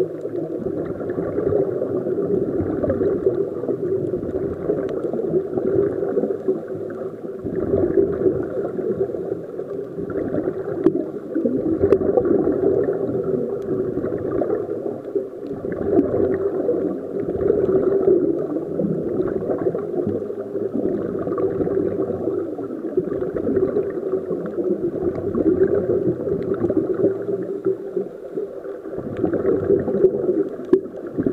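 Muffled underwater ambience dominated by the gurgling of scuba divers' exhaled bubbles from their regulators, a dense, low wash that swells and eases every few seconds.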